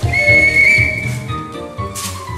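A referee's whistle blown once, a steady high note lasting about a second, over backing music with a steady beat.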